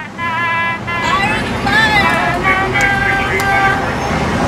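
Car horns honking in passing traffic: several overlapping toots of steady pitch, one after another, over the rumble of road noise.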